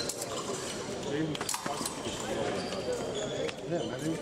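Épée fencers' shoes squeaking and thudding on the piste as they step back and forth in guard, with a few sharp stamps about a second and a half in. A hall full of voices runs behind, and a voice shouts "ne, ne, ne" near the end.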